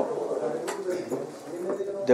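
A man's voice, quieter than his speech around it, held in a drawn-out hesitation sound between phrases.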